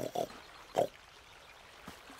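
Cartoon boar character grunting three short times: two in quick succession, then one more a little later.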